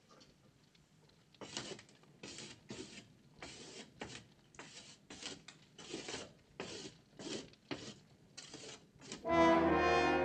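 A charred stick scratching on a wall in a quick run of short strokes as letters are written out one by one. Near the end a loud orchestral chord with brass comes in and holds.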